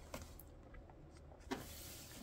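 Faint handling of hardcover books on a wooden tabletop: a couple of light taps, then a knock about one and a half seconds in followed by a brief sliding hiss as a book is moved across the surface.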